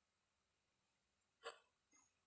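Near silence in a pause in a man's speech, broken once, about one and a half seconds in, by a single brief mouth sound.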